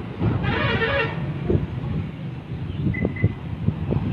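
Street traffic noise: a steady low engine rumble, with a vehicle horn sounding for under a second about half a second in and two short high beeps near three seconds.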